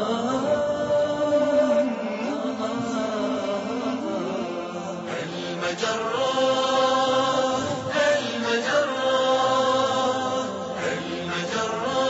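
Chanted vocal theme music of a TV programme's opening titles, voices holding long, wavering notes.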